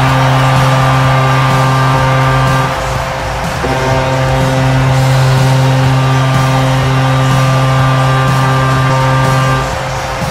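Kahlenberg KPH-130 air horn sounding an arena goal horn: one long low blast that stops about three seconds in, then a second long blast a moment later that cuts off just before the end.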